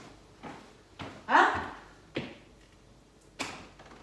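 Several short knocks spread unevenly through a quiet room, the sharpest one near the end.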